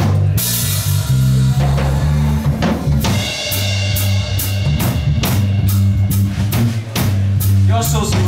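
Live blues-rock band playing an instrumental passage: a drum kit keeping a steady beat with cymbal crashes near the start and about three seconds in, over a prominent electric bass line and electric guitar.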